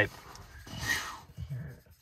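A dog's faint breathy huffs through the nose, the loudest about a second in, as it fixates on something outside.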